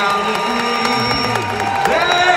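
A man singing a long held note of an old music-hall song, live on stage, with the pitch dropping near the end into the next phrase.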